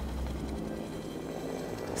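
Helicopter running steadily: a low, even drone of engine and rotor.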